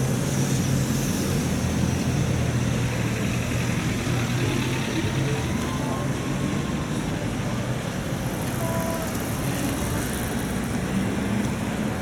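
Tatra T3 tram pulling away from a stop and running off down the line amid street traffic noise. A steady low hum is heard for the first half and fades out after about six seconds.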